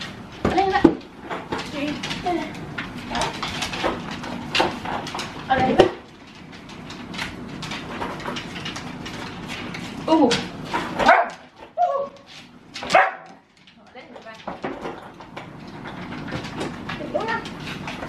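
Several huskies whining, yipping and barking, excited while waiting to be fed. The short cries bend up and down in pitch and come in bouts, the loudest about a second in and again past the middle.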